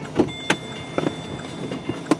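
A few sharp clicks and knocks inside an Opel Corsa's cabin as a door is opened, over a steady low hum, with a thin steady high tone starting about half a second in.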